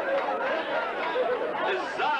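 Crowd chatter: many men's voices talking over one another.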